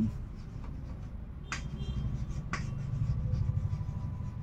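Chalk writing on a chalkboard: scratchy, rapid strokes, with two sharper taps about a second and a half and two and a half seconds in.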